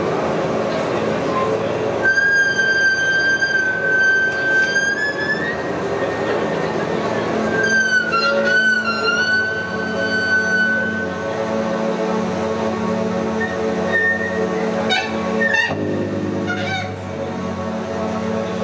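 Experimental band playing live: a dense, steady droning layer. A high held tone comes in about two seconds in, bends and returns around eight seconds, and short sliding tones appear near the end.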